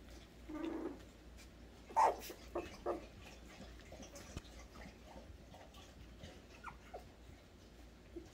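Young poodle puppies whimpering and squeaking as they play: a short whine about half a second in, a louder, higher yip at about two seconds followed by two quick squeaks, then a few faint squeaks later.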